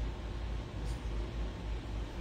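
A low, steady rumble of room noise picked up by an open handheld microphone, with no speech.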